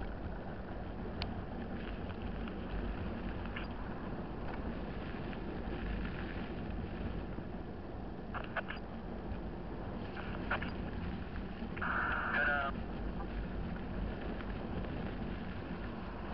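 Steady wind and road rush on a motorcycle-mounted camera while riding, with the motorcycle's engine running underneath. A few faint clicks come through, and a brief pitched chirp sounds about twelve seconds in.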